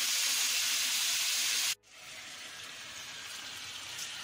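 Chicken pieces sizzling in hot oil in a frying pan, a steady hiss. It cuts off abruptly a little under two seconds in, and a quieter sizzle of the chicken in its own liquid then comes back and slowly grows.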